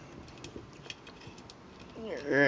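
Faint, scattered clicks and scrapes of hard plastic parts being worked apart by hand as the wings are pulled off a transforming robot figure, where they fit tightly.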